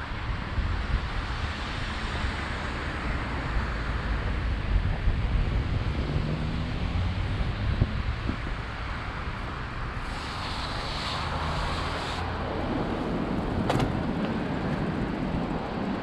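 Wind rumbling on the microphone of a camera carried on a moving bicycle, over a steady wash of road traffic from the avenue alongside. A passing hiss rises for a couple of seconds past the middle, and a single sharp tick comes near the end.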